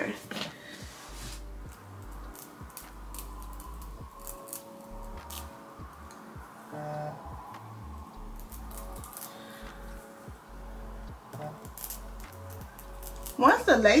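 Small pink eyebrow-razor blade cutting through the excess wig lace along the hairline: a string of short, crisp, scratchy snips at an irregular pace.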